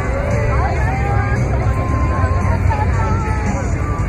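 Outdoor crowd chatter: many voices talking at once over a steady low rumble.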